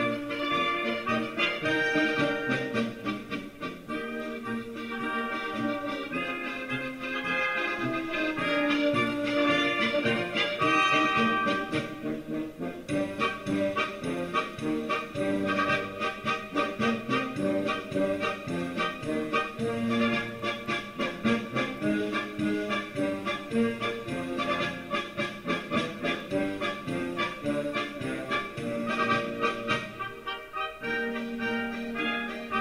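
Small Danube Swabian brass band with clarinets, trumpets, tubas, accordion and drums, playing traditional Swabian brass-band music. About halfway through, the playing settles into a steady pulsing beat.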